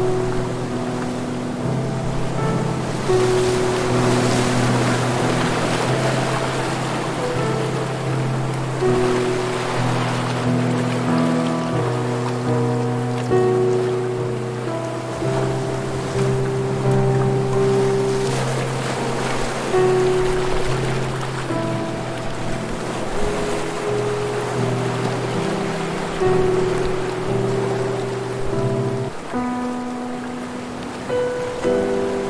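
Slow, soft instrumental music of long held notes over low chords, layered with ocean surf that swells and fades every few seconds as waves break and wash up the shore.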